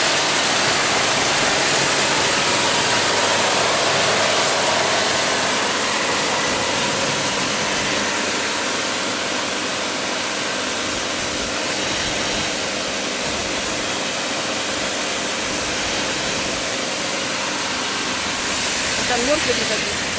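Pressure washer running continuously: a steady, loud hiss of high-pressure water spray with a faint whine from the machine.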